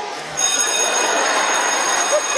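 An electric school-type bell ringing: it cuts in abruptly about half a second in and rings on steadily with a high, rattling clang.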